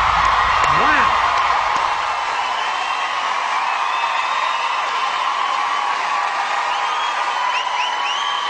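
Large audience cheering and screaming, with high-pitched shrieks and whistles, slowly easing off.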